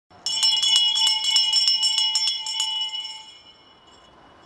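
A hand bell rung rapidly, several strokes a second, the call-to-attention bell of a town crier; the ringing fades out about three and a half seconds in.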